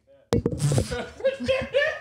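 A podcast microphone shoved into someone: one sharp knock about a quarter second in, followed by rustling handling noise, with laughter and voices over it.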